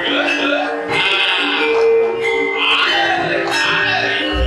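Javanese gamelan music for a wayang kulit shadow-puppet play: struck metallophones hold steady tones while a singer's voice wavers over them in long, drawn-out phrases.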